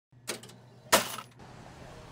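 Metal cash register drawer clanking: a light knock, then a louder clank with a short metallic ring about a second in.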